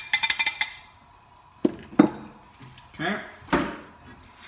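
Plastic spatula tapping and scraping in a non-stick frying pan: a quick run of light clicks at the start, then two louder knocks a little before halfway.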